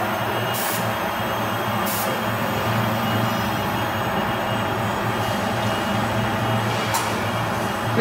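Steady drone of factory machinery with a constant low hum. Three short high hisses break in, about half a second, two seconds and seven seconds in.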